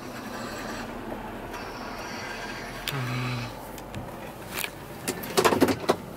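Inside a pickup truck's cabin as it rolls slowly up a gravel driveway: a steady noise of engine and tyres, with a few sharp clicks and knocks in the last second and a half.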